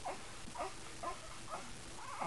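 A young baby's soft, short grunts and coos, about four of them, as she strains to roll over.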